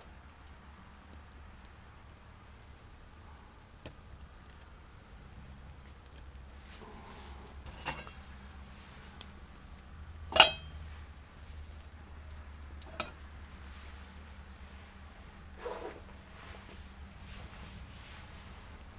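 Pine twigs burning in a small wood-gas (TLUD) camp stove under a metal pot, heard as a quiet fire with a few scattered sharp pops and clicks. The loudest, a single sharp crack with a slight ring, comes about ten seconds in.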